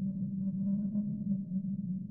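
A low, steady droning tone with faint wavering higher overtones and nothing bright on top: an ambient background soundtrack drone.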